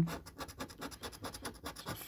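A gold coin scraping the latex coating off a paper scratch card in a fast run of short, uneven strokes.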